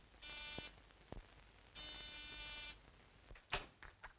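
Electric door buzzer sounding twice: a short buzz, then a longer one of about a second. A click falls between them, and a sharp knock near the end is louder than either buzz.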